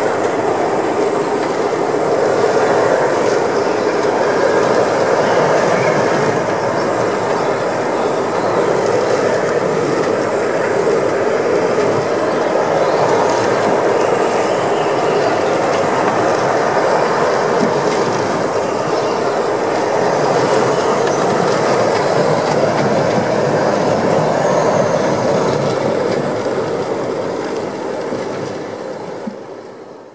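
Hurricane-force wind heard from inside a moored boat's cabin: a steady, dense roar that fades out near the end.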